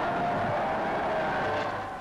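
Tank engine running steadily.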